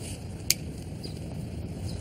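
A single sharp click about half a second in, over a steady low background rumble.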